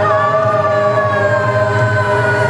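A man's voice holding one long sung note through a microphone, sliding slowly down in pitch, over a backing track with a steady low bass.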